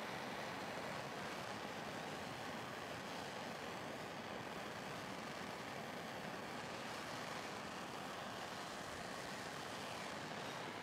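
Gas blowtorch burning steadily with an even hiss as its flame heats a rusty steel strap, softening it to be twisted flat.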